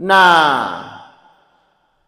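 A man's voice drawing out one long syllable, "na", its pitch falling as it fades away over about a second.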